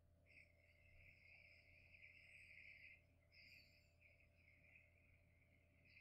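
Near silence: room tone with a faint, steady high-pitched hiss and a low hum.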